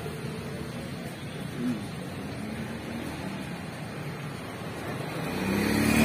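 Road traffic noise: a steady hum of passing vehicles, with an engine growing louder near the end as a vehicle comes closer.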